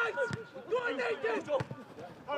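A man talking: match commentary, with the speech fading out near the end.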